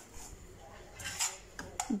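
Metal spoon stirring and scraping crumbly semolina toasting in butter in a steel frying pan. The scraping is soft, with a few sharper strokes about a second in.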